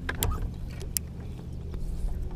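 Steady low electric hum of a bow-mounted trolling motor, with two sharp clicks, one just after the start and one about a second in.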